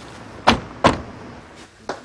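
Two car doors slamming shut in quick succession, about a third of a second apart, followed by a softer click near the end.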